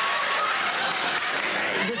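Studio audience laughing, a steady sound of many people. A man's voice resumes speaking near the end.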